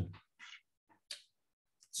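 A short pause in a man's speech over a video call. It holds only a couple of brief, faint breath-like sounds, and the voice picks up again at the very end.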